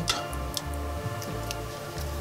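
Quiet background music with a few light, irregular ticks.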